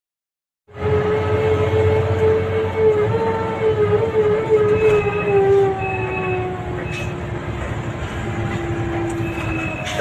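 A vehicle horn held in one long continuous blast, its pitch sagging slightly, over a steady low rumble of engine and road noise. It starts abruptly just under a second in and stops just before the end.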